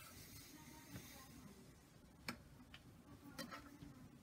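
Near silence with light fabric rustling and a few scattered faint clicks as cotton fabric is handled and positioned at a sewing machine, the sharpest click a little past two seconds in and a small cluster of clicks near the end.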